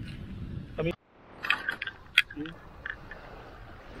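A cast net being handled over sand: the mesh rustles and gives scattered small clicks, with one sharper click about two seconds in. The sound drops out abruptly about a second in.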